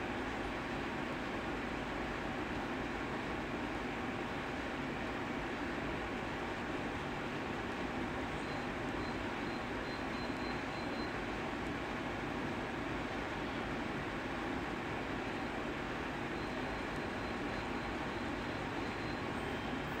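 Steady background noise: an even hum and hiss that holds unchanged, with no distinct events.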